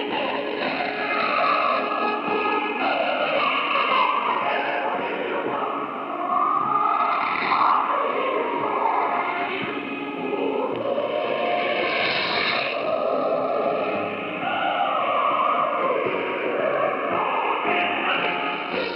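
Music from a shortwave AM broadcast of the Voice of Korea on 9335 kHz, heard through a communications receiver. It sounds muffled and thin, with nothing above the AM channel's narrow audio band, and a faint steady whistle sits under the music.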